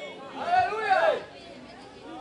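A voice speaking a short phrase about half a second in, quieter than the preaching on either side.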